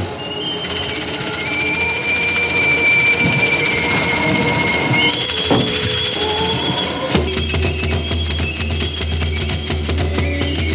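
Background music: long held high notes over a drone, joined about seven seconds in by a deep bass and fast, steady percussion.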